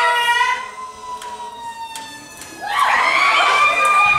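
Fire engine siren sound effect: a held siren tone slowly sinking in pitch, then about three seconds in a rise to a higher held tone.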